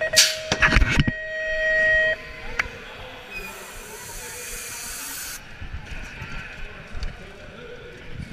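BMX start gate working: a second of metal clattering as the gate drops, under a steady electronic start tone held for about two seconds that then cuts off. About a second and a half later a hiss runs for about two seconds, typical of the gate's pneumatic ram resetting it.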